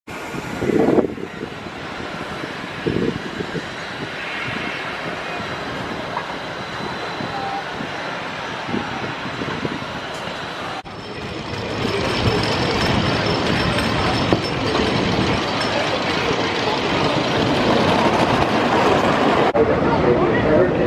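Wooden roller coaster train rumbling along its track against amusement-park background noise, louder in the second half. The background changes abruptly about a second in and again about eleven seconds in.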